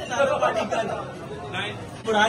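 Several men talking over one another: overlapping conversational chatter.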